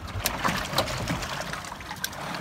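Water splashing and trickling, with several short sharp clicks or knocks in the first second.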